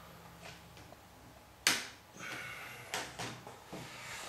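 Plastic LEGO side panel being clicked back onto a brick-built AT-TE model: one sharp snap about a second and a half in, then a few lighter clicks.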